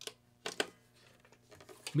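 A few short clicks and knocks from a plugged-in electric guitar being handled, over the faint steady hum of the amplifier rig.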